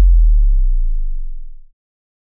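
A deep electronic sub-bass tone fading steadily and dying away shortly before the end.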